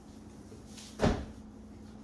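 A single dull thump about a second in, as a person gets up and moves away, over a faint steady hum.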